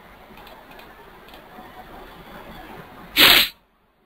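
Faint steady hiss of a microphone with a few soft clicks, then, about three seconds in, a sudden loud burst of noise lasting about a third of a second, after which the background cuts out to near silence.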